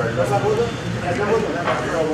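Indistinct men's voices talking.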